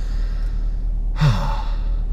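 A man sighs once, a little past a second in: a breathy exhale with a short falling note of voice. A steady low hum sits underneath, inside the car.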